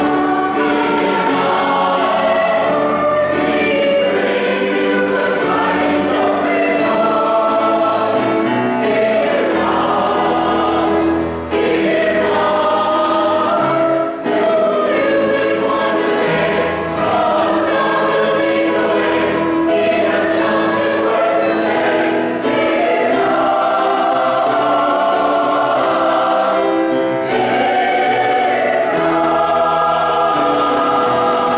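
A church choir of men and women singing a choral piece in phrases of sustained notes, with brief breaks between phrases.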